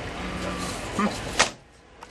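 Outdoor background noise with a short burst of voice about a second in, then a sharp click, after which the sound falls nearly quiet.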